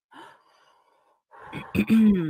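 A person takes a deep breath in, then lets it out in a long, loud sigh. The sigh becomes voiced near the end and falls in pitch.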